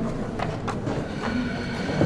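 Room noise of a large hall: a low, steady rumble with a couple of light clicks about half a second in and faint murmuring.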